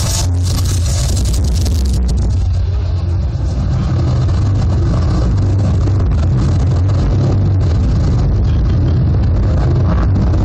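Loud, steady low rumble from a building projection show's soundtrack played over loudspeakers. A hiss in the highs drops away about two seconds in.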